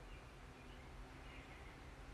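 Near silence: faint, steady low room hum.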